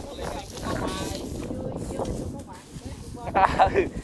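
Diesel engine of a rice-hauling tractor chugging steadily under load while the mud-stuck tractor is pulled free, with voices talking over it about a second in and again near the end.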